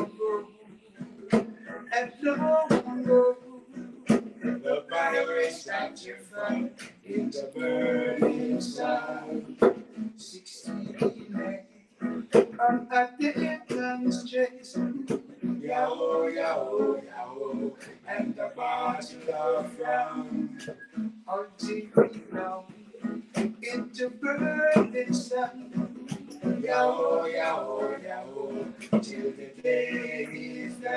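Men singing a song in phrases to a strummed acoustic guitar, in a small room.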